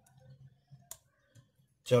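Metal battery clips being fixed onto a battery's terminals: one sharp click about a second in, with a few fainter ticks around it.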